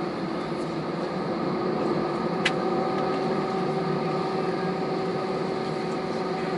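Cabin noise of an Airbus A320 taxiing: the engines running at taxi power give a steady hum with a few steady whining tones. A single sharp click sounds about two and a half seconds in.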